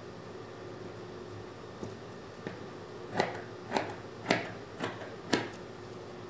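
Scissors cutting thin knit fabric: five short snips about half a second apart in the second half, over a faint steady hum.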